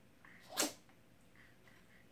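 A small dog gives one short, sharp sneeze about half a second in while it plays: a play sneeze.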